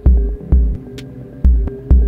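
Electronic music: deep, heavy bass hits fall in pairs about half a second apart, under a steady held synth tone and sparse, sharp high clicks.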